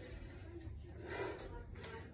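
Faint heavy breathing of a man recovering from jumping switch lunges, with a soft breath swelling about a second in.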